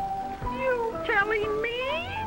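A cartoon character's vocal wail, cat-like and wavering, that sinks and then rises in pitch toward the end, over an orchestral score.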